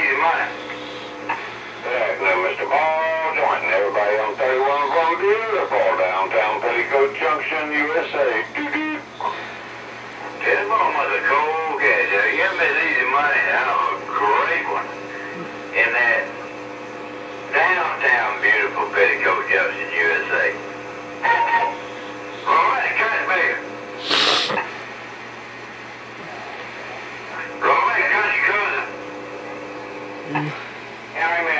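Voices of CB operators checking in on channel 31, heard through the speaker of a Galaxy Saturn base-station radio: thin, narrow-band speech in a series of short transmissions with gaps between them, over a steady hum. One sharp click comes about three quarters of the way through.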